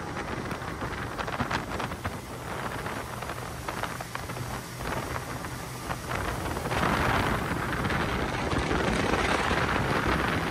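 Motorboat under way at speed: wind rushing over the microphone with the hiss of spray and churning wake over the boat's engine. It grows louder about seven seconds in.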